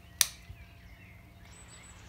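A single sharp clink of a metal spoon against a glass jar, with a brief ring, followed by a faint tick.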